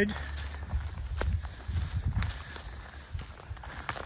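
Footsteps through grass, uneven and soft, over a steady low rumble, with a few light sharp clicks.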